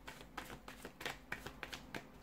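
Deck of tarot cards being shuffled by hand: a faint run of short, uneven card clicks and flicks.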